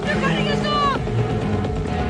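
Film soundtrack: panicked shouting in the first second over a tense score with steady held tones and a low rumble.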